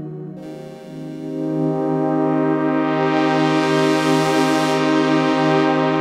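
Crumar Orchestrator's brass section playing sustained chords through its Moog-type filter, with a change of chord about half a second in. The filter is swept open around the middle so the tone turns bright and buzzy, then closes back to a mellower sound.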